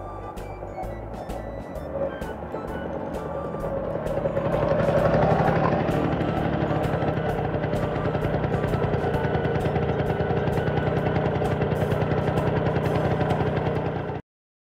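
Motor-scooter engine sound effect running with a steady, fast-pulsing buzz that grows louder about four seconds in, over children's background music.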